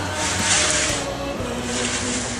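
A scraping hiss, about a second long near the start, as a foil dish of steaks is slid on a pizza peel across the floor of a wood-fired oven, over background music.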